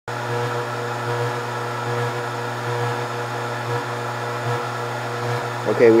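Scotle IR 360 rework station's fans running with a steady, even whirring hum.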